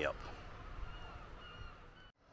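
Quiet outdoor background noise with a few faint, short, high-pitched chirps, the last near the end. The sound then cuts out.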